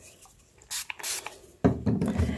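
Two short hisses of a fine-mist pump spray bottle wetting the thread, about a second in. Near the end comes the rubbing of a hand rolling the damp thread on denim.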